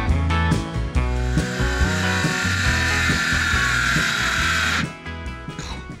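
Cordless circular saw cutting through plywood for about three seconds, its pitch sinking slightly, then cutting out suddenly as its battery goes flat mid-cut.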